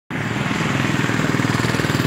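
A small vehicle engine running steadily close by with a fast, even pulse, over a haze of street traffic noise.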